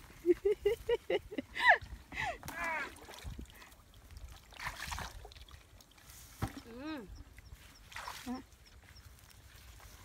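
A plastic bucket dipped into a shallow muddy ditch and filled with water, sloshing about halfway through. A woman laughs near the start, the loudest sound.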